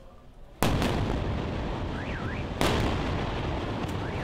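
Airstrike explosions hitting a building: a sudden loud blast about half a second in, then a long rumble, and a second sharp blast about two seconds later. A faint rising-and-falling tone sounds through the rumble.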